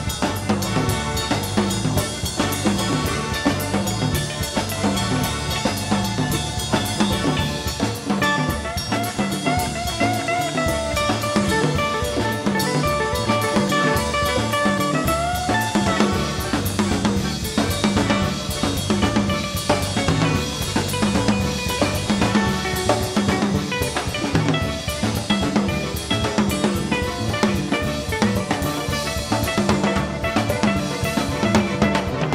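Live band playing an instrumental passage without vocals, the drum kit driving a steady beat with snare and bass drum, while a lead line slides up in pitch a couple of times around the middle.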